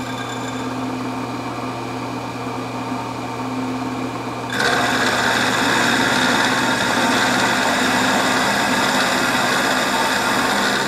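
Vertical milling machine running with a steady motor hum; about halfway through the end mill bites into the steel and a louder, high-pitched steady cutting sound takes over as a slot is milled.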